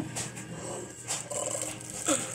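Faint rustling and handling noise of packaging as a boxed wax warmer is looked at and unwrapped, with a soft click at the start.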